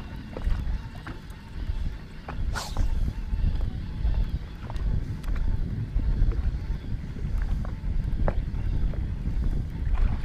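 Wind buffeting the microphone in a steady low rumble, with scattered small clicks and one brief hiss about two and a half seconds in.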